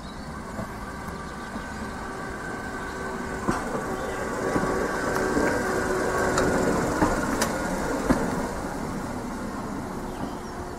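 Class 139 Parry People Mover light railcar running slowly past, its steady whining hum growing louder as it comes close and easing off near the end, with a few sharp clicks along the way.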